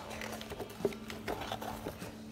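Soft rustling and small taps of a glossy paper coupon booklet being handled, with a page turned.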